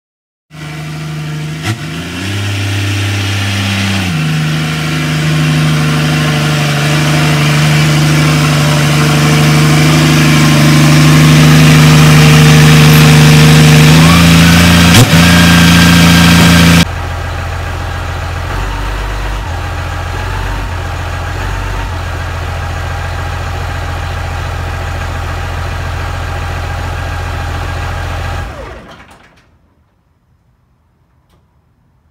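Pickup truck engine running loud with a steady, droning tone. It then drops suddenly to a quieter, low rumble at idle, which fades out near the end.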